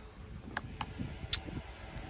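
Quiet low background rumble with a few faint clicks, one sharper click a little after the middle.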